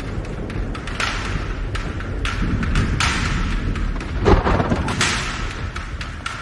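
Tense film soundtrack: deep drum hits and short knocks under rushing swells that come about every two seconds, with one loud low thud a little past the middle.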